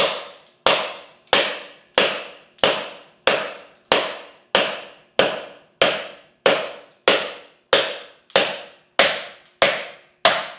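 A heat-treated 5160 steel knife blade chopping into a pine 2x4, about sixteen evenly spaced strikes at roughly one and a half a second. Each is a sharp crack that fades over about half a second.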